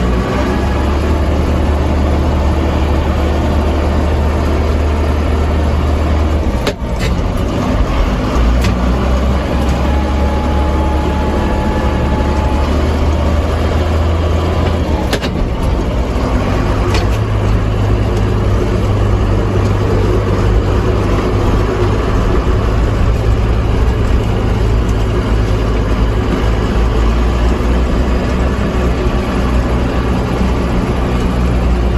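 JCB Fastrac 3185 tractor's diesel engine running steadily under way, heard from inside the cab. Its low drone steps to a new pitch a few times.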